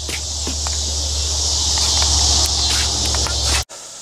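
Steady high-pitched insect chorus over a low steady hum, with a few light clicks, swelling slightly and then cutting off abruptly shortly before the end.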